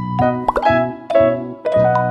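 Cheerful children's background music: a melody of short, ringing notes, each starting sharply, with a short rising pop sound effect about half a second in.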